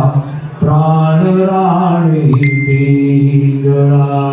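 A man chanting into a microphone in a low voice, holding long steady notes that glide slowly from one pitch to the next, with a short breath just after the start.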